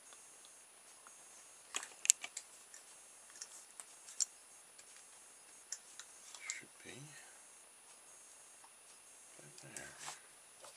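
Handling of a steel ruler and a plastic drinking straw on a cutting mat: scattered light clicks and taps, the sharpest about two seconds in, then a craft knife set to the straw near the end to cut it.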